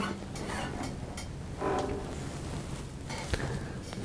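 Handling noise as acoustic guitars are moved and set down: low rustling with a few light knocks.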